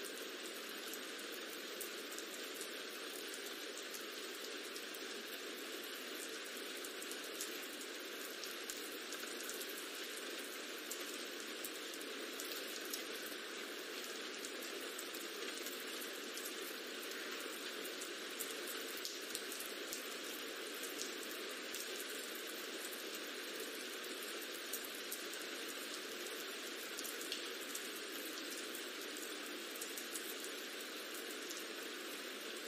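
Rain ambience track: a steady hiss of rainfall with scattered small drop ticks.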